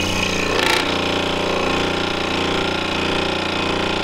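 Scroll saw running with a steady, even hum as its reciprocating blade makes relief cuts into a cherry board, with a brief brighter hiss of the cut about half a second in.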